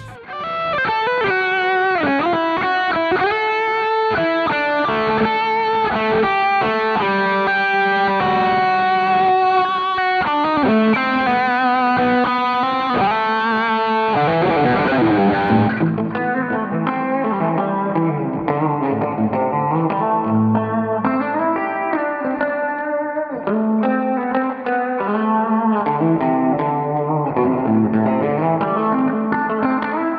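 Seven-string electric guitar (Strandberg Boden Prog NX7 with active Fishman Fluence Modern pickups) playing a pickup demo: melodic lead lines with held, bright notes, changing about halfway through to a darker, lower-pitched riff.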